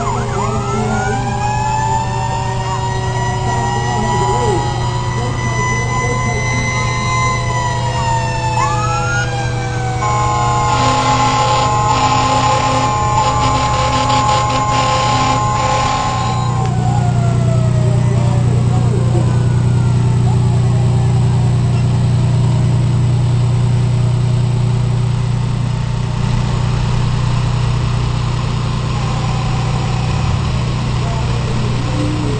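Fire engine sirens wailing, several pitches rising and falling over one another as the trucks pass. About ten seconds in, a steady horn chord sounds for some six seconds. After that a low steady engine drone from the passing trucks takes over.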